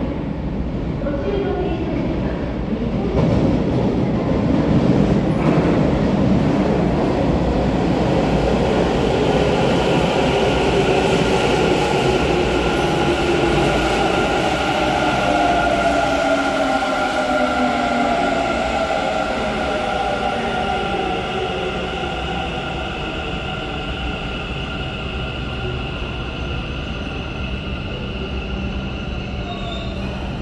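Hanshin 1000 series six-car electric train pulling into an underground station and braking to a stop. The running noise of wheels on rail grows loud as the cars pass, then eases. A whine of several tones falls in pitch as the train slows.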